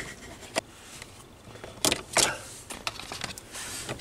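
Plastic under-dash trim of an Alfa Romeo MiTo being handled and pulled to expose the OBD connector: a few sharp plastic clicks and knocks, the loudest two about two seconds in, followed by a quicker run of smaller ticks.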